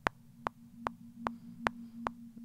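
A single synth note held steadily, played back from a piano-roll bass line, with sharp metronome-like clicks about two and a half times a second.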